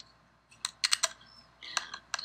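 Computer keys tapped: a handful of quick, sharp clicks, the slide being advanced to the next one.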